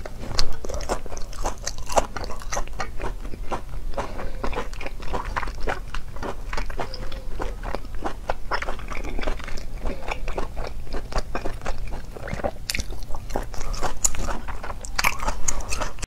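Close-miked eating: a person biting and chewing a crunchy food, with many crisp crackles and clicks, loudest about half a second in and busier again near the end, over a steady low hum.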